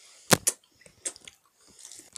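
Hard candy being crunched in the mouth: two sharp crunches about a third of a second and half a second in, then a few faint clicks.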